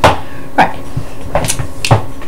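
A few sharp knocks and bumps of objects being handled close to the microphone, the first the loudest.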